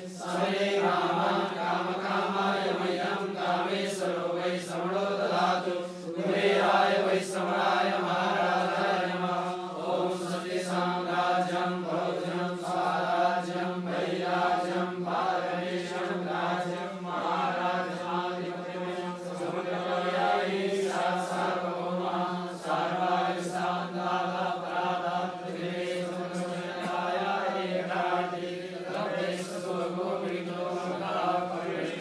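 Vedic Sanskrit mantras chanted continuously, held on a steady low pitch.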